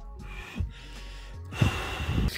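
Ramen noodles being slurped from chopsticks: a short sucking hiss about half a second in, then a louder, longer slurp near the end.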